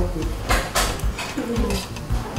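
Stainless steel mixing bowls being handled on a kitchen counter, with two short metallic scraping clatters about half a second and just under a second in.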